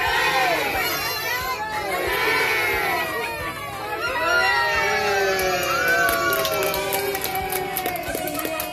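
A crowd of adults and small children cheering and shouting together at a birthday cake, with scattered hand clapping joining in over the last few seconds.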